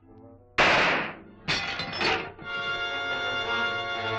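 Laboratory glassware smashing with a sudden loud crash about half a second in, a second crash about a second later, then a held orchestral music chord.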